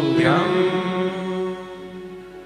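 A man chanting a Sanskrit verse of praise in a sung mantra style, starting a last syllable just after the beginning and holding it as one long note that slowly fades.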